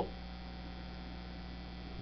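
Faint, steady electrical mains hum with a low buzz and light hiss, unchanging throughout.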